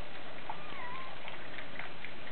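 Rain falling and water running down a cup-style rain chain: a steady hiss of splashing water with occasional drips. About half a second in, a short wavering call rises over it for about half a second.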